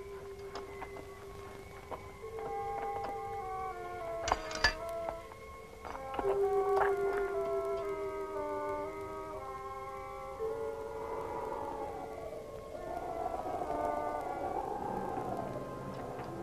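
Film score music: long held notes under a slow melody that moves in steps, with a few sharp struck accents about four to five seconds in. In the second half the tones waver and swoop up and down.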